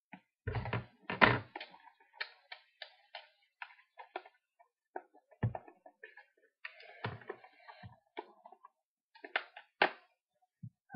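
Stiff clear plastic packaging being worked and pried at by hand as it resists opening: irregular clicks, creaks and crackles, with a few louder knocks, the loudest about a second in and another near the end.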